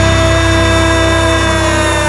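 Heavy rock band's final chord held and ringing out after the last hit: a loud, sustained distorted drone from electric guitars and bass, its pitch sinking slightly as it slowly fades.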